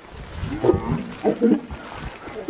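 A person's voice making a few short wordless sounds, about half a second to a second apart.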